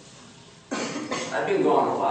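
A cough about two-thirds of a second into a pause, followed by a person speaking.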